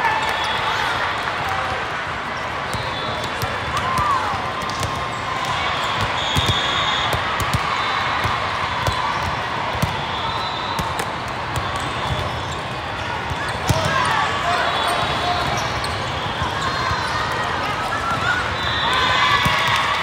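Busy volleyball tournament hall: a constant din of many voices, with players and spectators calling out, over sharp scattered thuds of volleyballs being struck and landing on several courts, in a large hall.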